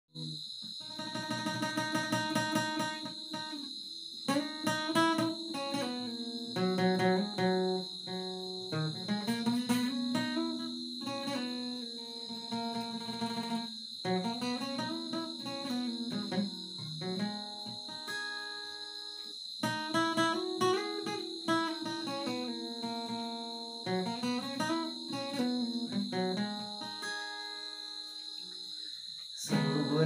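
Acoustic guitar played solo, with picked notes and strummed chords in phrases with short pauses between them. A steady high-pitched whine runs underneath throughout.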